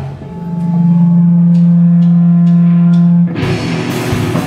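Distorted electric guitar holds one sustained low note while four even drum ticks sound about half a second apart, a count-in. Then the full raw-punk band of guitar and drum kit comes in together near the end.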